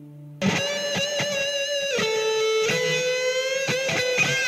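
Electric guitar music that comes in loud and sudden about half a second in, after a quieter held tone. It plays held lead notes that bend and waver in pitch, over a few sharp plucked attacks.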